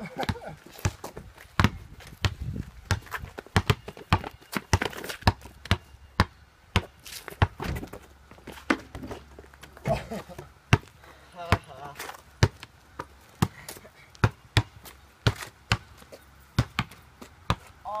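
A basketball bouncing on asphalt, a sharp bounce every second or so at an uneven pace as it is dribbled and played.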